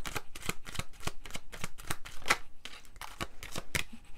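Tarot deck shuffled by hand: a quick, uneven run of cards flicking and slapping against each other.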